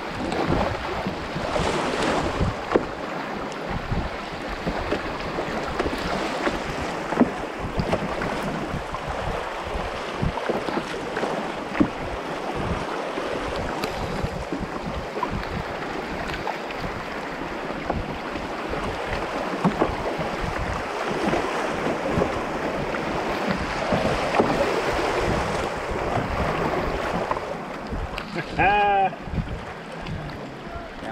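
Fast river water rushing and splashing around a canoe running a rapid, with wind gusting on the microphone in short low jolts. A brief call from a voice is heard near the end.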